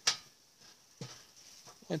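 A man speaking Finnish, pausing mid-sentence: a single sharp click right at the start, then a quiet gap, and his voice again just before the end.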